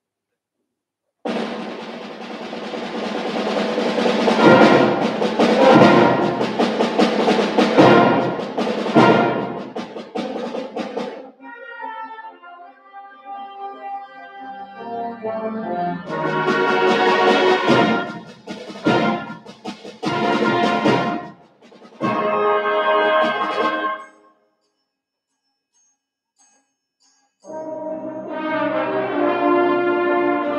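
School concert band of brass, woodwinds and percussion playing. The opening is loud and punctuated by sharp percussion strikes, followed by a softer passage and a second loud stretch. It breaks off into a silence of about three seconds near the end, then the brass come back in with sustained notes.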